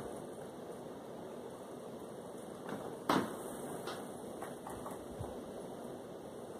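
Steady background hiss with a few light taps and knocks, the clearest about three seconds in, as makeup and a brush are handled.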